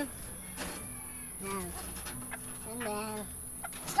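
Chickens clucking in the background: two short calls, about a second and a half in and again about three seconds in, over a low steady hum.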